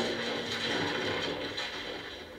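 A person falling down a flight of stairs in a TV drama, played on a television: a rough clattering tumble that is loudest at the start and fades away over a second or two.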